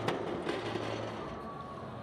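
Street-riot ambience, a dense steady rush of crowd and street noise, with one sharp crash just after the start as a thrown metal traffic light hits the road.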